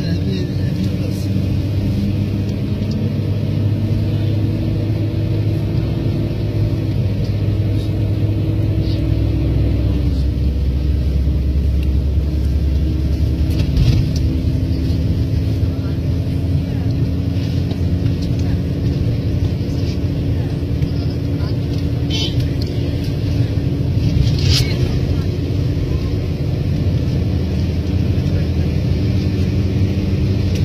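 Vehicle engine and road noise heard from inside the cab while driving at steady speed, a continuous low drone. The engine note drops in pitch about ten seconds in, and a few brief light ticks or rattles come through later.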